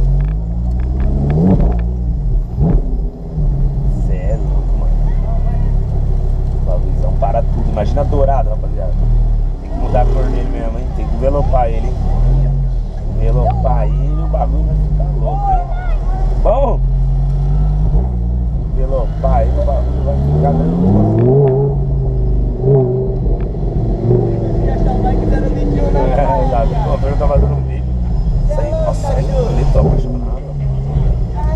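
Audi R8 engine running as the car drives slowly in traffic, its pitch rising and falling several times as it speeds up and eases off.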